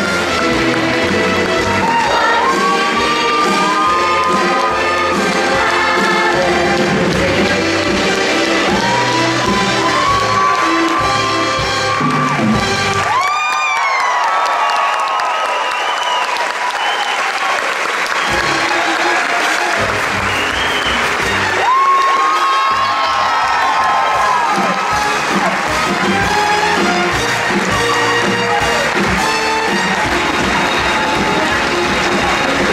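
Live theatre band playing the brassy, upbeat finale music of a stage musical, with the audience applauding over it. The bass drops out for a few seconds about halfway through, then comes back.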